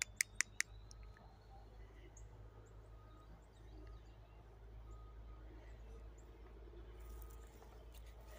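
Faint woodland ambience: a low steady rumble with a few faint, scattered bird chirps. A quick run of about four sharp clicks comes right at the start.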